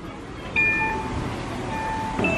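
Disney MagicBand touchpoint reader chiming as a MagicBand is tapped against it, the sign that the band has been read. A short high tone comes about half a second in, then a lower tone near the end.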